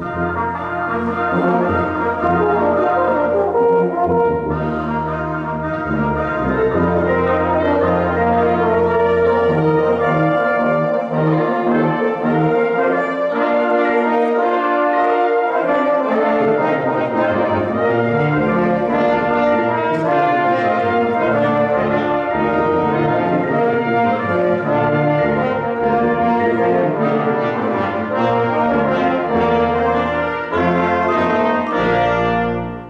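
A band with prominent brass comes in together all at once and keeps playing at a steady full volume, with held chords that change every second or so.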